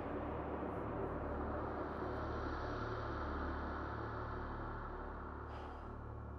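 A low, steady drone of dramatic background score, with faint held tones above it, fading slightly toward the end.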